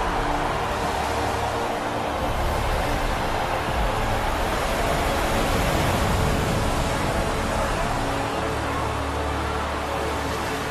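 Heavy torrent of water pouring down from a cliff, a loud steady rush, with the film score's low held tones beneath it.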